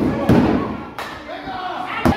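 A wrestler's body slamming onto the wrestling ring's mat: a heavy thud about a third of a second in and a sharp smack about a second in, over spectators' voices.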